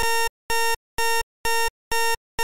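Electronic alarm clock going off at wake-up time: short, identical beeps at about two per second, five in a row.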